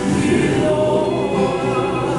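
A group of voices singing a Tongan kava-circle (faikava) song together, holding long notes.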